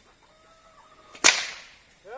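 A long horse whip cracked once, a single sharp crack about a second and a quarter in, used to urge the horses on to exercise.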